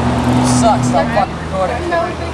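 A steady low motor hum that cuts off a little over a second in, under scattered voices.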